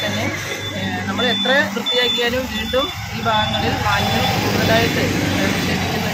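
A woman speaking to the camera over the low hum of a vehicle engine running nearby. A short high-pitched beep repeats every half second or so, like a vehicle's reversing alarm.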